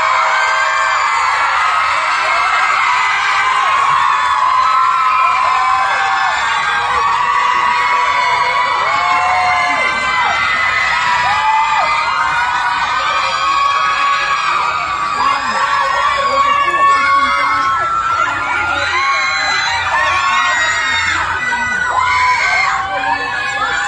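Audience cheering, with many voices shouting and whooping at once.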